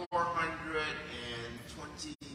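A man speaking through a lectern microphone; the sound cuts out for a split second right at the start.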